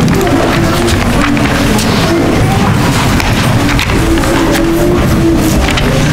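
Music with held notes, loud and continuous.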